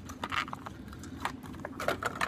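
Hands handling a die-cast toy car in its plastic blister packaging: a scatter of sharp clicks and crackles over a low steady hum.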